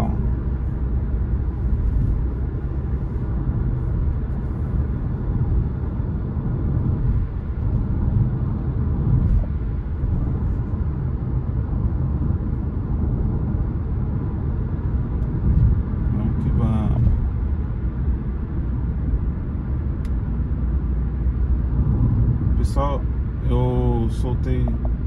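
Steady low rumble of engine and tyre noise inside a car's cabin while it drives along a highway.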